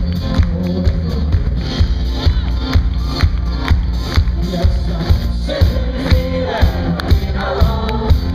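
Live band playing an upbeat folk-rock song on acoustic guitar, bass guitar and drums, with a steady beat of about two drum hits a second; singing comes in near the end.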